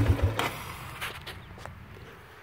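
Four-wheeler engine idling, then shut off a fraction of a second in; after it, a quiet outdoor background with a few faint clicks.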